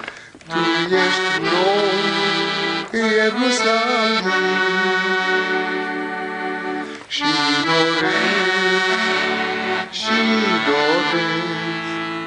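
Accordion playing a slow hymn tune in long held chords, with short breaks between phrases.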